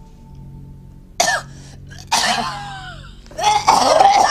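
A woman coughing hard in harsh, strained fits, the first about a second in, another at about two seconds, and the heaviest near the end, over a low steady music drone.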